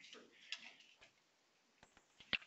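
Near silence: room tone with a few faint, short clicks, one about a second in and two fainter ones near the end.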